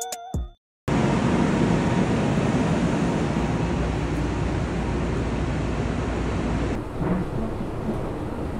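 Long Island Rail Road commuter train running: a loud, steady rumble and rushing noise. Near the end it changes suddenly to a quieter, duller hum.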